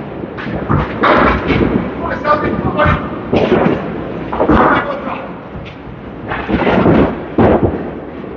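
Candlepin bowling alley sound: balls and pins crash and clatter several times, with voices talking among the bowlers.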